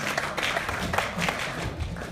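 Audience applauding, many scattered hand claps.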